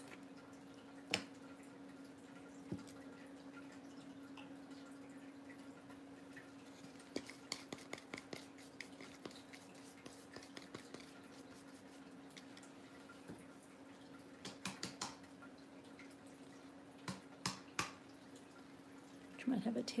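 Sparse, faint ticks and taps on plastic: a few near the start, a cluster in the middle and another near the end, over a steady low hum.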